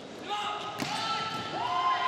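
Indoor volleyball rally: the ball is struck sharply a few times in the first second, with players' shoes squeaking on the court, a longer squeak rising and held near the end.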